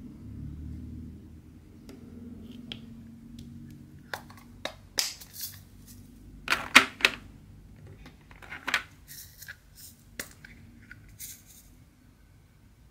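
Irregular sharp crinkles and clicks of a small plastic bag of resin diamond-painting drills being handled. They start about a third of the way in, are loudest a little past the middle and die away near the end.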